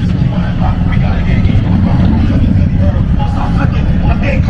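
Night street ambience: a loud, steady low rumble with faint, indistinct voices of people talking.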